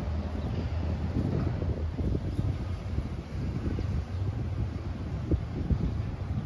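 Wind buffeting the microphone: an unsteady low rumble that rises and falls throughout.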